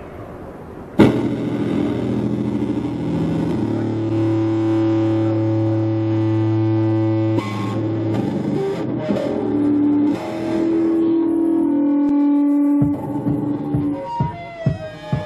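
Live music starts suddenly about a second in: electric bass guitar played through effects with synthesizer, in long held notes that change every three seconds or so.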